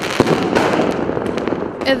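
Fireworks going off in a dense run of crackles and pops, with one sharper bang shortly after the start. Speech begins at the very end.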